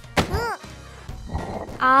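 Cartoon sound effects over soft background music: a sharp thunk just after the start, followed at once by a short voice sound that rises and falls in pitch. A voice starts speaking right at the end.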